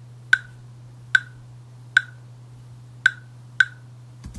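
Five sharp computer mouse clicks at irregular intervals, each with a brief high ring, over a steady low electrical hum.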